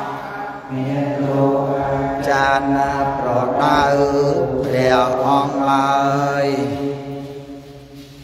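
Buddhist monks chanting together, a sustained, melodic group recitation with drawn-out notes that tails off near the end.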